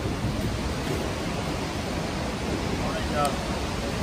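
A fast mountain river rushing steadily, with a brief faint voice about three seconds in.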